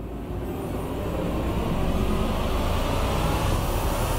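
A low rushing noise that swells steadily louder throughout, the riser-style dramatic sound effect laid under a tense reaction shot.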